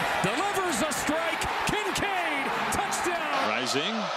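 A football broadcast commentator's voice, with music playing under it.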